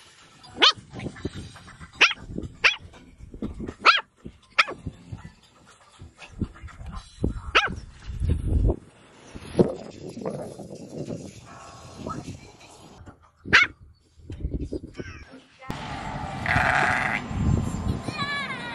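Pomeranian puppy barking in short, sharp, high-pitched yaps, about eight spread out, alarmed by a ring-toss toy that scares him. Near the end a longer, fuller animal call is heard.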